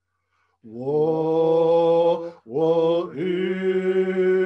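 Unaccompanied male singing of an Indigenous song in long held notes. It begins about half a second in with an upward glide into the note, breaks briefly near the middle, and comes back with another held note.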